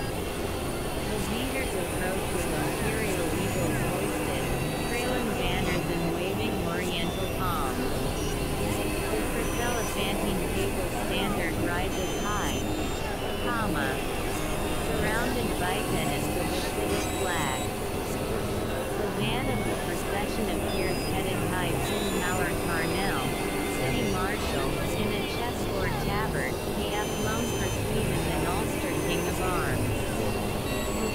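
Dense, steady electronic noise drone, scattered throughout with many short rising and falling chirps and brief high tones, with indistinct, buried voices running underneath.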